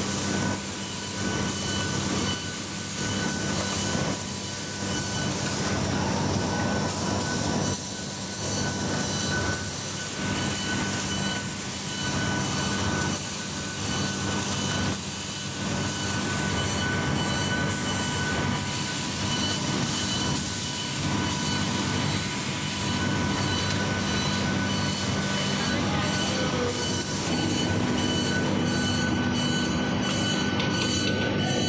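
Automatic book binding machine running: a steady mechanical drone with constant whining tones, and a high hissing clatter that comes back every second or two as it cycles.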